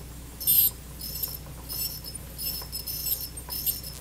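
Satelec P5 Newtron piezoelectric ultrasonic scaler with an H4L perio tip, chirping and squealing in short high-pitched bursts as the vibrating tip scrapes across a plastic typodont tooth, the strongest about half a second in. The squeal comes from contact with the artificial typodont and does not happen on real teeth.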